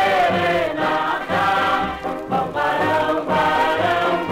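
Samba music by a singer and orchestra, transferred from a 78 rpm record.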